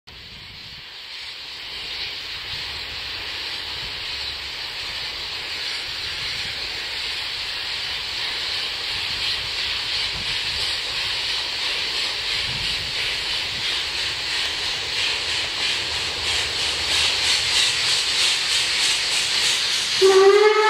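Narrow-gauge steam locomotive pulling away from a station: a steady hiss of steam from the cylinder drain cocks, growing louder as it comes nearer, with a regular exhaust chuff becoming distinct in the second half.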